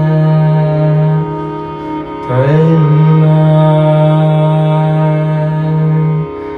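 Carnatic classical music without percussion: a raga passage of long held notes, breaking off about a second in and coming back about two seconds later with a gliding, ornamented attack before settling on another long held note.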